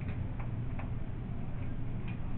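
Quiet classroom room tone: a steady low hum with a few faint, light ticks, about every half second at first and then more sparse.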